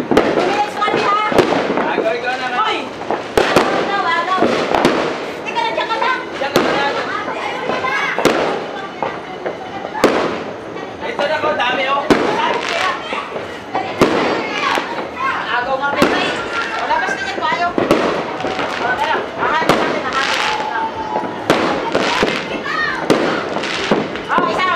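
Fireworks and firecrackers going off in irregular sharp bangs, about one every second or two, with people's voices talking and calling out between them.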